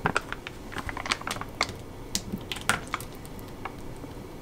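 Irregular small clicks and crinkles of food being served: a metal scoop pressing rice onto a wooden plate and a retort curry pouch being handled and opened. The clicks are thickest in the first few seconds and thin out near the end.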